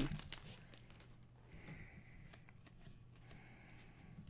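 Faint crinkling and tearing of a foil trading-card pack wrapper being opened by hand, with a few small ticks.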